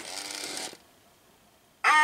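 Talking animatronic vampire figure's recorded voice from its built-in speaker, a held note trailing off about a third of the way in. A short near-silent pause follows, then a voice starts abruptly just before the end.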